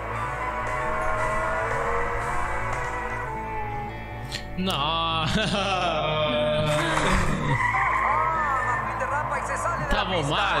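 Cartoon race-car engines revving and tires skidding on a racetrack, over background music with a steady beat; the car sounds grow louder about halfway through.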